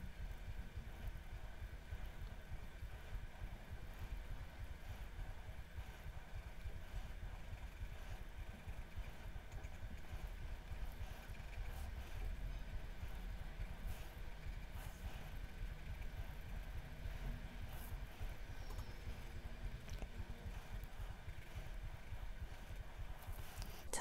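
Faint scratching of a colored pencil drawing fine lines on paper, over a steady low room hum.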